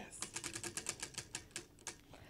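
Prize wheel spinning, its pointer clicking against the pegs on the rim in a quick run of ticks that come farther and farther apart as the wheel slows to a stop.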